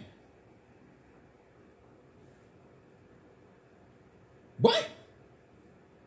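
Playback of a vocal track recorded on a phone: faint steady background noise between takes, which the rapper puts down to the beat leaking from his headphones, then about four and a half seconds in a single short shouted ad-lib that falls in pitch.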